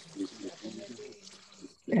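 Water from a garden hose running over an orchid's root ball as the old roots are rinsed clean, a steady hiss under quiet voices.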